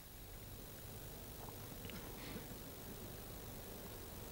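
Faint, steady open-air ambience of a large crowd gathered in a square, with no speech or music, and a couple of faint brief sounds about two seconds in.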